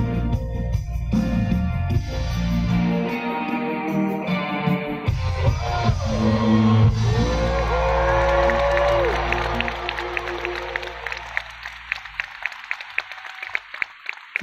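Live pop-rock band with guitars, keyboard and drums playing the final bars of a song, which ends about halfway through. The audience then cheers with a loud whoop, and the clapping dies away near the end.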